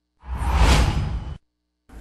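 Whoosh sound effect of a news logo transition: one noisy sweep with a deep low rumble that swells and fades over about a second, then cuts off suddenly.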